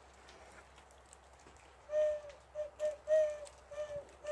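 A handheld owl call is blown in a series of about six short hoots at one steady pitch, imitating an owl's hooting. The hoots start about halfway through.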